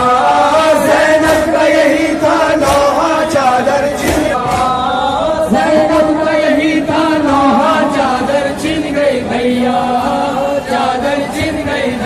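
Male voices chanting a Shia noha lament in drawn-out, wavering notes, over a steady beat of short sharp strikes.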